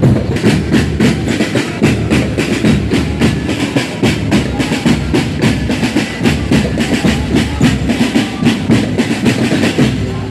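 Marching drum corps playing large bass drums and other drums in a fast, steady beat.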